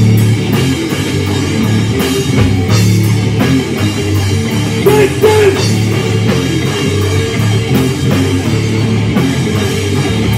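A rock band playing live: electric guitar, bass guitar and drum kit in a loud, steady instrumental passage.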